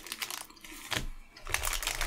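Close chewing of a crunchy wafer chocolate bar (a chunky cookie dough Kit Kat): scattered crisp clicks and crackles that grow denser and louder about a second and a half in.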